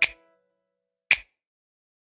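The tail of an advertisement's music dying away at the start, then digital silence broken once, about a second in, by a single short click-like sound effect.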